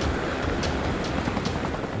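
Mil Mi-17 transport helicopter running: a steady wash of rotor and turbine noise.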